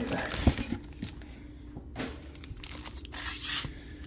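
Cardboard card box and foil-wrapped trading-card packs crinkling and tearing as the packs are pulled out of the box: a few light clicks, then several short bursts of rustling.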